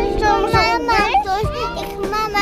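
Young children's high-pitched voices calling out and chattering, over background music with held notes.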